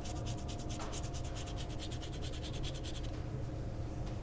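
A fine rasp grater scraping the peel of an orange in quick, even strokes, grating zest. The rasping stops about three seconds in.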